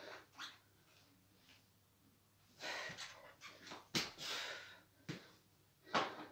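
A person breathing, with two long noisy breaths in the middle, while working to balance on a mountain bike. A few short sharp clicks and knocks come in among the breaths.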